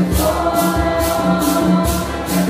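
A mixed congregation singing a Santo Daime hymn in unison. Maracas are shaken in a steady beat of about two strokes a second.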